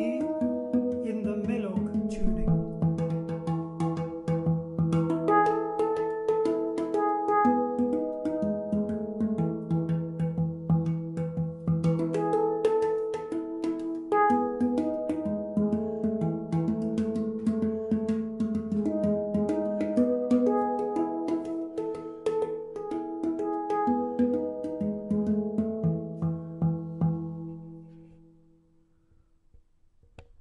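Baur & Brown steel handpan tuned to Melog in E, played with the hands: a quick, continuous stream of struck notes that ring and overlap, with light percussive taps among them. The playing stops and the last notes ring away a couple of seconds before the end.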